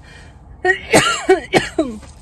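A woman coughing, a quick run of about four short bursts that starts a little over half a second in and stops just before the end.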